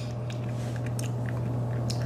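Faint mouth sounds, a few small clicks and smacks of the lips and tongue, from a man whose mouth is burning from a spicy wing. A steady low hum runs underneath.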